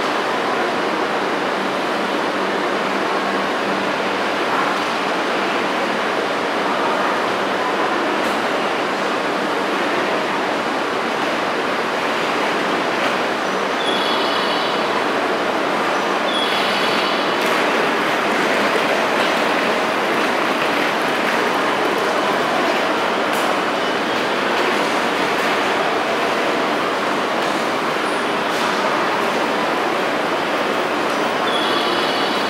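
Steady running noise and low hum of an electric express train standing at a station platform, its onboard equipment running, with a few brief high beeps.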